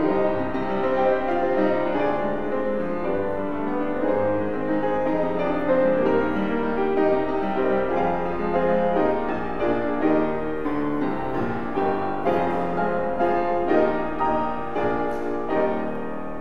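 Grand piano played solo, a dense passage of many notes and chords. A final chord is struck shortly before the end and left to ring.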